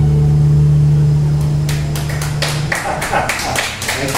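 The final chord of the guitars ringing on and dying away, with scattered clapping starting about a second and a half in and taking over as the chord stops.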